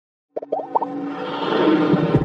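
Intro music and sound effects: after a brief silence, a quick run of four or five short rising tones, then a sustained musical sound that swells.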